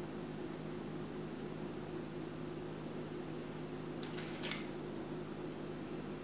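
Steady low room hum, with a brief cluster of small clicks and a scrape about four seconds in: toothpicks being pushed into an avocado seed by hand.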